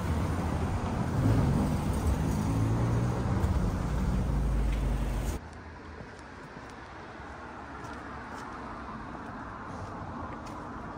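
A louder low rumble with a few steady low tones for the first five seconds or so, cut off suddenly. Then a quieter, steady hum of distant road traffic on a city street.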